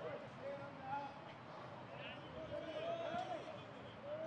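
Ballpark ambience: faint, scattered voices from a sparse crowd and players, with no close voice.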